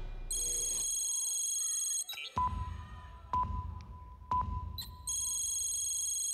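Electronic show sound effects: a steady high synthetic chord, then three deep thumps each topped by a sharp beep about a second apart, then the high chord again.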